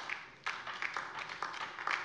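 Scattered applause, a dense patter of many hand claps, starting about half a second in.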